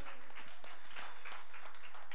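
Scattered applause from a small congregation: irregular hand claps, thinning out rather than a full ovation.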